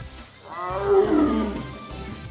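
A tiger's call: one long vocalization starting about half a second in and falling in pitch over about a second, over background music.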